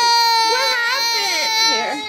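A toddler crying: one long, high wail that slowly falls in pitch and breaks off near the end. The adults take it for her being overwhelmed.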